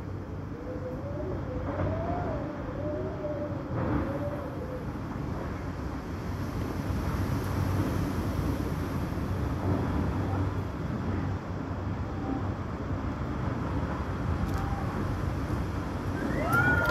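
Strong gusting wind and rain from an approaching waterspout, a steady low rush with wind buffeting the microphone, growing slightly louder. A faint wavering tone comes and goes over the first few seconds.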